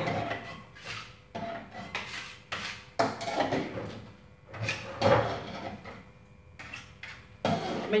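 A spoon scraping and knocking against the metal wok and pots of a homemade ice-and-salt ice-cream maker as frozen ice cream is scooped out, in irregular clinks and scrapes.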